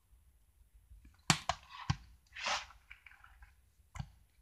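Plastic DVD case handled and set down on a table: two sharp clacks a little over a second in, then a short scraping rustle and a few faint ticks.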